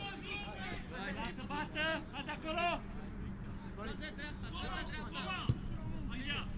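Men shouting and calling out to each other on a football pitch, with a short lull partway through and one sharp knock near the end.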